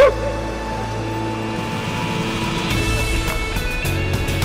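Background music with long held tones. Right at the start a brief, loud, sharp cry cuts in over it.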